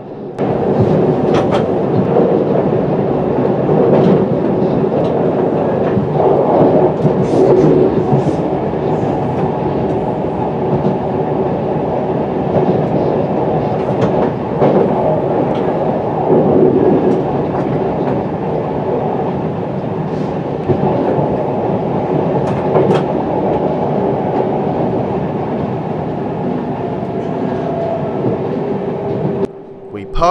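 Electric passenger train running along the track: a steady rumble of wheels on rail with a steady hum, and a few sharp clicks as the wheels pass over rail joints and points.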